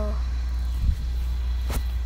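A steady low rumble, with one thump about a second in and a short sharp click near the end.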